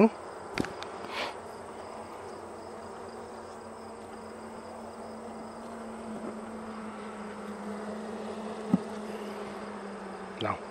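Honeybees from an open nuc hive buzzing in a steady, even hum. Two brief clicks stand out, one about half a second in and one near the end.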